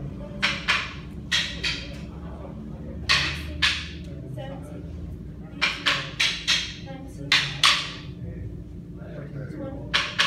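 Quick, sharp strike sounds from a child working through martial-arts attack combinations on a partner, coming in clusters of two to four in quick succession, with short pauses between the clusters.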